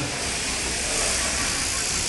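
Electric sheep-shearing machines running in the shearing hall, a steady hiss with no breaks.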